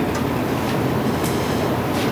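A steady, low rumbling background noise with no speech, holding an even level throughout.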